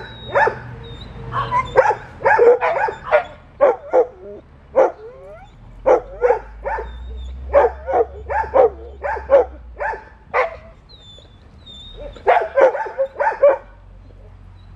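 A dog barking excitedly in quick runs of short barks, several a second, with short pauses between the runs; a brief whine comes among them about five seconds in.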